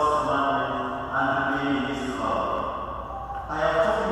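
A man chanting a prayer in held notes on a few pitches, in phrases about a second long with short breaks between them.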